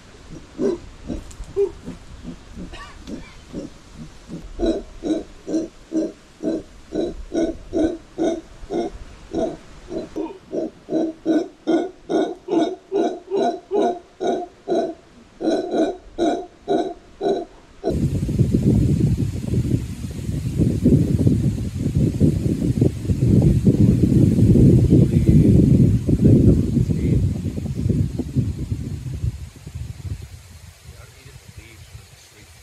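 Mantled howler monkeys calling: a run of short, pitched grunting calls, about two a second and quickening. About two-thirds through it switches abruptly to a continuous, dense, rough low sound that lasts about ten seconds.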